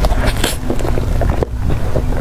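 A person eating soft cream dessert off a spoon, close to the microphone: a run of short wet mouth clicks over a steady low rumble.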